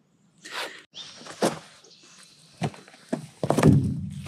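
A handful of irregular thuds and knocks with rustling, the loudest cluster near the end; no saw is running.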